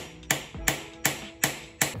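Hammer striking a screwdriver held against the front sprocket nut of a Yamaha MT-07 to knock it loose, about five even, sharp metal taps in a steady rhythm of roughly two and a half a second.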